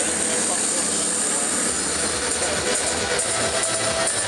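Steady din of a large stadium crowd, many voices blending into one continuous noise.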